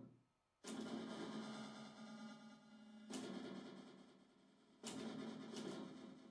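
Amplified typewriter played as an instrument through effects: four sharp struck hits, the last two close together near the end, each one followed by a long, slowly fading ringing drone.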